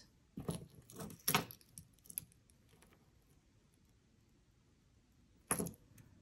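Light metallic clinks and jingling of a small gold jewellery chain and steel chain nose pliers being handled: several short clicks in the first two seconds, then quiet, then two more clinks near the end.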